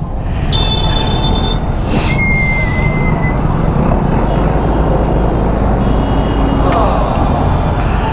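Busy road-junction traffic: a steady low rumble of motorbike, scooter and car engines close around the scooter. Two short high-pitched horn blasts sound about half a second and two seconds in.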